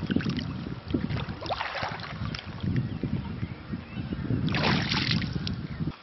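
Water splashing as a carp is released by hand in shallow lake water, over wind rumbling on the microphone. A longer burst of splashing comes near the end.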